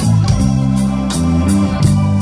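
Live rock band playing an instrumental vamp: held electric-organ chords from the keyboard over electric bass guitar, with a few cymbal hits.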